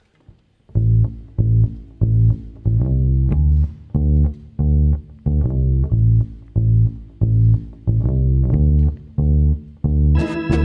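Electric bass guitar playing a solo intro: a repeating line of plucked low notes, roughly two a second, starting about a second in after a brief hush.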